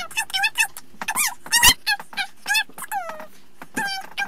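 A boy making high-pitched squeaky noises with his voice: a fast run of short squeals and yips that bend up and down in pitch, with a longer falling squeal about three seconds in. A sharp knock sounds near the middle.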